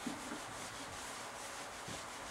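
Whiteboard eraser rubbing across a whiteboard in repeated back-and-forth strokes, wiping off marker writing.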